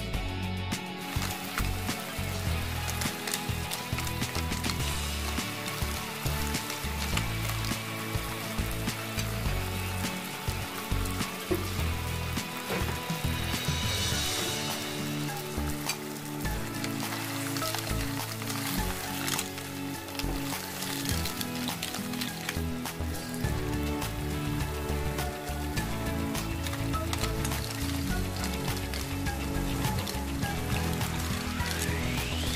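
Background music over the sizzle and bubbling of food cooking in a pan on the stove.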